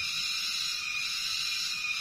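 A steady, high-pitched chorus of calling animals.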